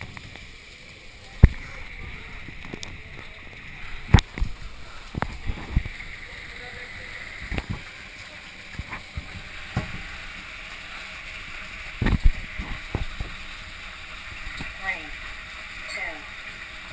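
Water hissing and rushing along a water slide as a rider slides down it, with several sharp knocks as the body and chest-mounted camera hit the slide.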